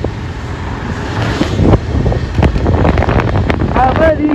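Wind buffeting the microphone on a moving motorcycle: a rough, low rumble with scattered knocks.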